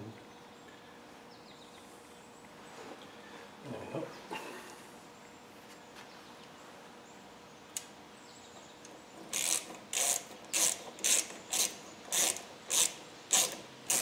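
Ratchet spanner clicking in a regular run of short strokes, about two a second, over the last few seconds: a longer grease nipple being screwed into a propshaft universal joint.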